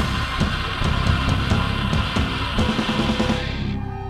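Live heavy metal band playing an instrumental passage: distorted electric guitar and drum kit, with no vocals. Near the end the sound goes dull and fades.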